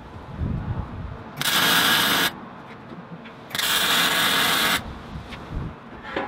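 Two welding bursts from a MIG welder tacking a steel ring handle onto a plough-disc wok. Each is a steady, loud hiss of about a second that starts and stops sharply.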